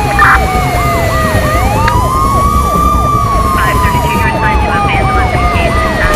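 Electronic emergency sirens sounding together: a slow wail that rises and then falls over about three seconds, under a rapid yelp of about three sweeps a second. A steady low rumble runs underneath.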